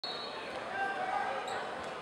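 Basketball dribbled on a hardwood gym floor, a few bounces near the end, with voices echoing in the gym behind it.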